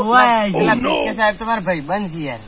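Speech: a person talking, with a short breathy, hissing stretch near the middle.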